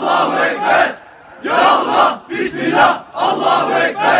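A small group of men shouting slogans in unison, in short loud phrases with a brief pause about a second in.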